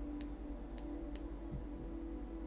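A pen on sketchbook paper making three short, sharp ticks in under a second and a half, over a steady low hum.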